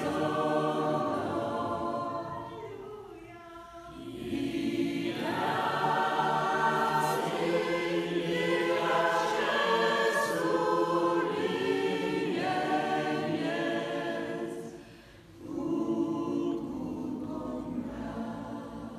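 Choir singing a cappella in phrases, the sound dropping off briefly twice, about three seconds in and again near fifteen seconds.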